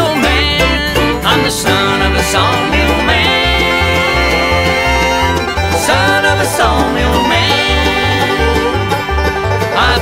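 A bluegrass band playing an instrumental break without singing: banjo picking over a steady alternating upright-bass line, with fiddle, guitars and drums, and a lead instrument repeatedly sliding up into long held notes.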